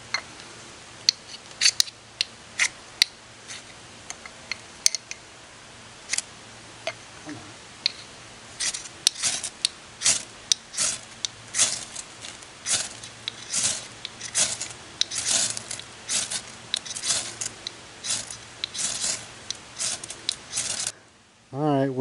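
Ferro rod struck repeatedly with a scraper over birch-bark and old man's beard tinder: short rasping scrapes, a few scattered at first, then about one or two a second from about eight seconds in, cutting off suddenly near the end. The tinder has not yet caught.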